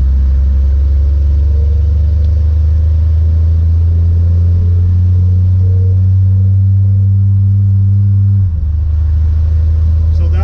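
Cabin drone of a 1951 Hudson Hornet under way, its flathead straight-six running at steady cruising speed: a loud, even low hum. About eight and a half seconds in, the hum drops lower and a little quieter, as when the throttle eases.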